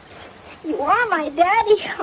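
A child's voice, drawn out and wavering, starting about half a second in and sweeping up and down in pitch like an emotional cry.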